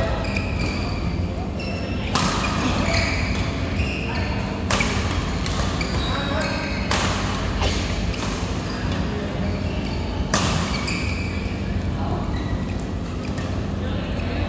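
Badminton rackets striking a shuttlecock in a doubles rally: about five sharp cracks a few seconds apart, echoing in a large hall, over background voices and a steady low hum.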